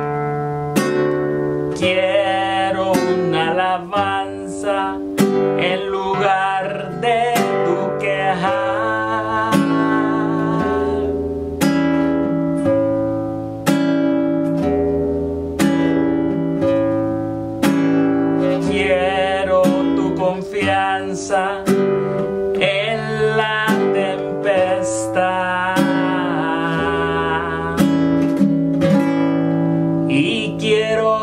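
Nylon-string classical guitar strumming the song's chord changes, with singing over it.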